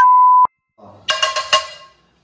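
Steady electronic beep tone, an edited-in sound effect, that cuts off sharply about half a second in. About a second in, a brief ringing chime effect sounds over a short voiced 'oh'.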